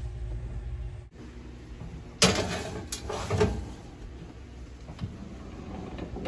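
Oven door being opened and a metal baking sheet slid onto the oven rack: a sudden clatter about two seconds in, then scraping and a few knocks and clicks.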